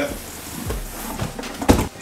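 Cardboard box being handled and opened while a jacket is lifted out: a soft scraping rustle, with one sharp, louder knock or rustle near the end.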